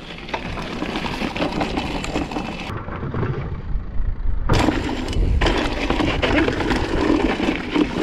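Downhill mountain bike ridden fast over a dry, rocky dirt trail: tyres crunching over gravel and stones, with the bike rattling in many sharp clicks. A little under three seconds in, the sound goes dull and low for about a second and a half, then the clatter comes back.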